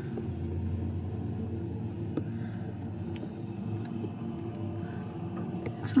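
Steady low rumble of distant traffic, with a faint hum.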